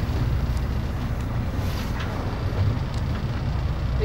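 Steady low rumble of a boat's engine, mixed with wind buffeting the microphone.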